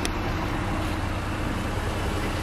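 Dodge Charger's engine idling steadily, a low, even hum.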